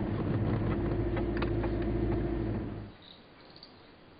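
Vehicle engine running steadily, heard from inside the cabin as a low hum. It cuts off abruptly about three seconds in, leaving a quiet room with a few faint ticks.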